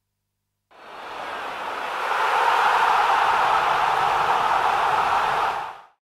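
A steady rushing noise that swells in about a second in, holds level, and fades out just before the end.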